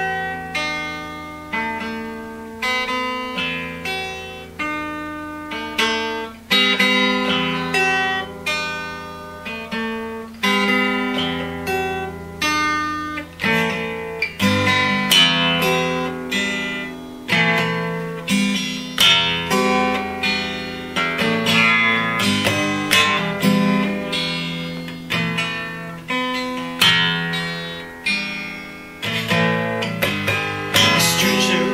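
Solo acoustic guitar playing an instrumental intro: chords picked and strummed in a steady rhythm, each stroke ringing out and fading. The playing gets louder and fuller about six seconds in.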